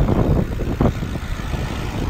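Steady wind rush on a phone's microphone from riding a bicycle in slow town traffic, with car engines and road noise underneath.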